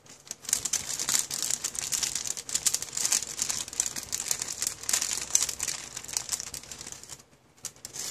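Thin translucent wrapping paper crinkling and rustling as it is unfolded and handled by hand, in dense irregular crackles that stop about seven seconds in.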